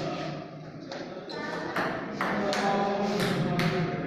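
Table tennis ball knocked back and forth in a rally: a series of sharp clicks of the celluloid ball on bats and table, starting about a second in. People talk in the background.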